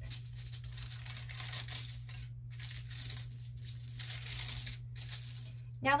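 Tin foil being folded and rolled up by hand into a long, thin strip: continuous crinkling and crackling, broken by two brief pauses.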